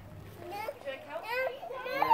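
Toddlers' voices, a few short, faint babbled calls, one rising in pitch partway through.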